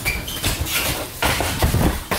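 Skateboard wheels rolling on a mini ramp, then a bail: the board clattering and the skater's body hitting the ramp, with a run of knocks in the second half.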